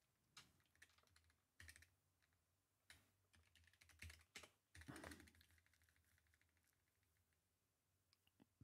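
Faint, irregular clicks of a computer keyboard being typed on, thickest around four to five seconds in and dying away after that.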